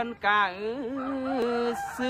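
A man chanting a su khwan blessing in a drawn-out, sing-song voice, holding long wavering notes.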